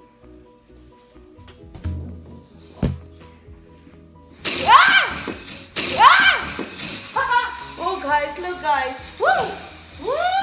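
A woman's loud, excited whoops and cries, each swooping up and then down in pitch, begin about four and a half seconds in and run on. Before them there is only faint background music and a single short thud about three seconds in.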